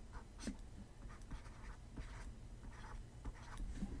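Faint scratchy rubbing and light ticks of a computer mouse being dragged and clicked over a desk to draw lines, in short irregular strokes.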